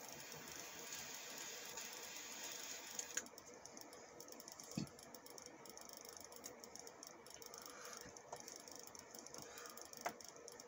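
Butane jet-flame torch lighter hissing steadily while it lights a cigar, cutting off with a click about three seconds in. After that it is faint, with a soft thump near the middle.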